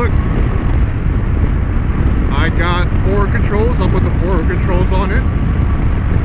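Harley-Davidson Dyna Low Rider V-twin riding at highway speed: a steady, loud low rumble of engine, road and wind rush on the microphone, with a man's voice talking over it in the middle.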